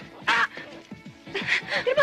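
Film soundtrack music with a repeating beat, overlaid by short, strained, nasal cries from a woman, one just after the start and a longer one near the end.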